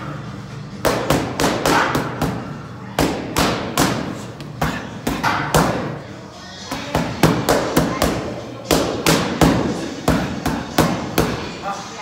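Boxing gloves striking focus mitts in fast combinations: four quick runs of sharp smacks, several punches each, with brief pauses between runs.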